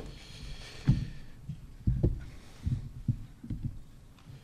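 About five irregular, dull low thumps spread over a few seconds: a lectern and laptop being bumped and handled, picked up through the lectern microphone.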